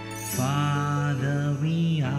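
A man singing a slow worship song over sustained instrumental chords; his voice comes in about half a second in and holds long notes.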